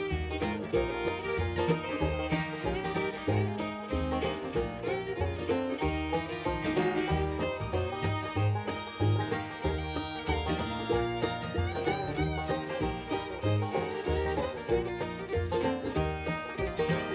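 Bluegrass string band playing an instrumental passage: a Deering Julia Belle low-tuned five-string banjo with mandolin, fiddle, guitar and upright bass, the bass notes falling about twice a second.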